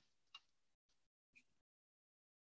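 Near silence, broken only by two faint, brief ticks about a second apart.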